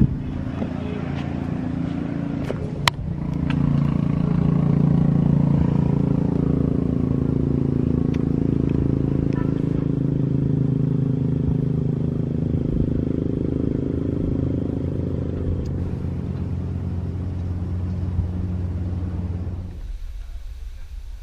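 A motor vehicle's engine running steadily, a low hum with a sharp click about three seconds in; it grows louder soon after and stops abruptly at the end.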